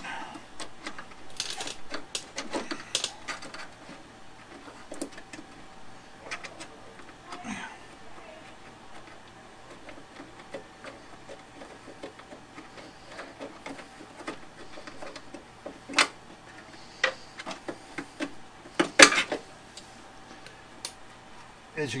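Scattered clicks, taps and knocks of hand-work on a scooter's key switch and wiring, with a sharper knock about three seconds before the end, over a faint steady hum.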